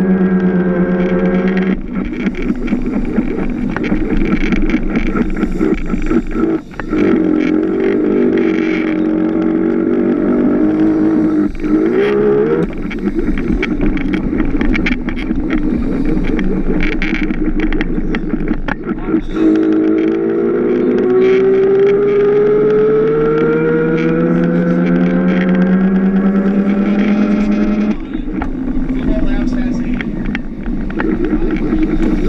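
Electric drive motor of a small Power Racing Series kart whining as it laps, heard from on board, its pitch dropping and rising with each corner and then climbing steadily for several seconds on a long straight before falling off near the end, with rattles and road noise from the chassis.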